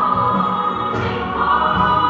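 Gospel worship song sung in Portuguese: a choir singing over a band with a steady beat, and a woman's voice singing along.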